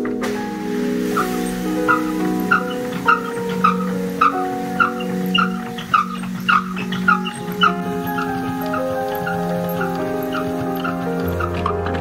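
Background music over the rhythmic squeaking of a wooden hand-cranked winnowing fan being turned to clean rapeseed, about two squeaks a second, stopping about eight seconds in.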